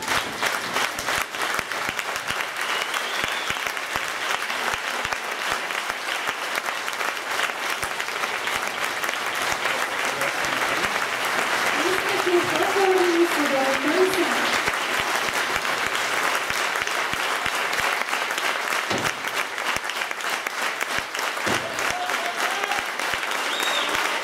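Audience applauding steadily after the final dance, with a voice calling out about halfway through.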